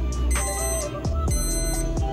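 Background music with a steady beat, over a digital probe thermometer's alarm beeping in short bursts about once a second: the milk is nearing the thermometer's 190-degree set point.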